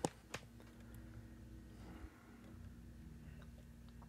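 A disk detainer pick working the disks of an Anchor Las 810-1 padlock, giving two short, quiet clicks in the first half-second and a fainter one about two seconds in, over a low steady hum.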